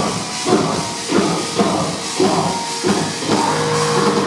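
Heavy metal band playing live, loud and distorted: bass and guitars over drums, with a hard accent about twice a second.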